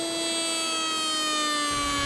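Router-table router spinning a lock miter bit, a steady high whine with many overtones that sinks slowly in pitch as the workpiece is fed through the cut.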